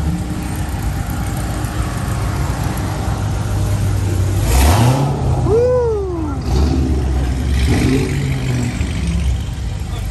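Car engines running at low idle, with one engine revved once about five seconds in, its pitch rising and then falling away.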